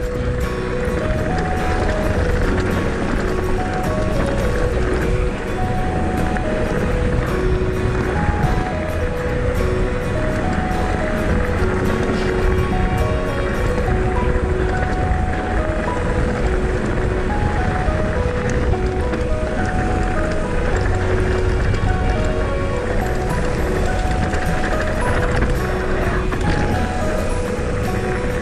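Background music with a short, repeating melody of held notes, over a steady rumble of wind and bike tyres rolling on a gravel track.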